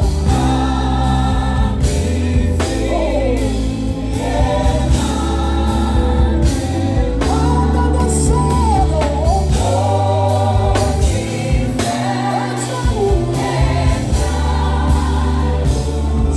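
Live gospel band with a lead singer and group vocals: sung melody over drum kit, bass and keyboards, amplified through a concert sound system.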